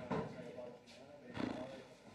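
Low murmur of voices in a room, broken by a few soft knocks and rustles, the clearest about one and a half seconds in, as someone sits down at a table and handles the things on it.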